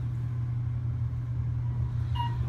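Steady low rumble and hum of an elevator car in motion, heard from inside the cabin.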